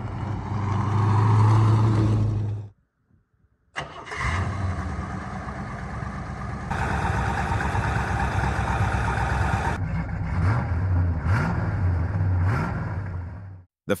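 Plymouth Road Runner's 426 Hemi V8 running loudly for a few seconds, then cutting off. After a second's gap it runs again at a steady idle, with several short throttle blips near the end.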